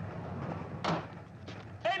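Steady low rumble of a moving railway carriage heard inside the compartment. A short, sharp sound comes a little under a second in, and a man's shout begins at the very end.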